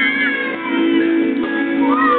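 Pop-rock band playing live, with electric guitar, and a high melody line that bends up and down in pitch in the first half second over sustained lower notes.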